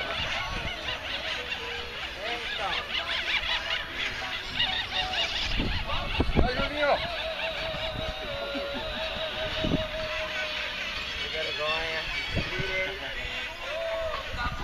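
People's voices talking in the background, unclear and overlapping, with a few knocks.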